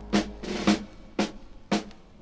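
Recorded music: a drum, snare-like, beating steadily about two strokes a second while the held chord and bass under it fade out in the first second, leaving the drum alone.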